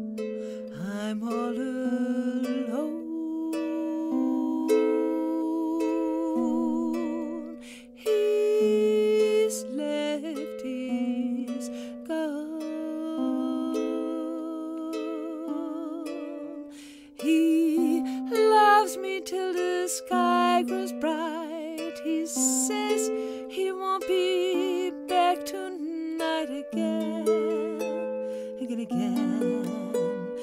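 Background music: a slow song with plucked-string accompaniment and a voice carrying the melody, its long notes wavering with vibrato.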